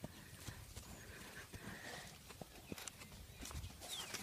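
Faint hoofbeats of a Friesian horse, a series of soft, irregular knocks.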